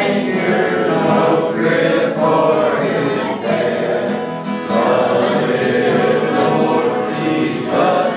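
Two acoustic guitars strummed steadily while a man sings a gospel song, with other voices singing along.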